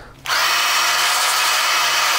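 A hand-held hair dryer switches on about a quarter of a second in and runs steadily with a faint motor whine, blowing hot air to warm the adhesive pad of a helmet mount before it is stuck on.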